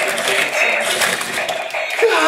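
Two toy fighting robots in battle: the whir of their small electric motors and the clatter of their plastic punching arms, with many small knocks running through a dense, busy noise.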